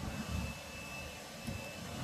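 Low steady background rumble with a thin, faint high whine, broken by a couple of soft low thumps, one just after the start and one about one and a half seconds in.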